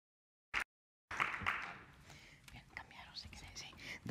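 Faint whispering and low off-mic voices from people at the speakers' table. A short click comes about half a second in, and the sound only comes in after about a second of dead silence.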